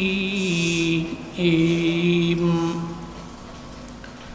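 A man's voice reciting Qur'an in a melodic chant, holding long notes: one held note until about a second in, a short break, then a second long note that falls away and fades out by about three seconds.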